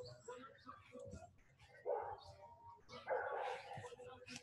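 A dog barking faintly twice, a short bark about two seconds in and a longer one about a second later.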